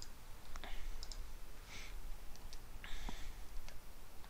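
Several faint computer mouse clicks, with a few soft short rustling noises between them.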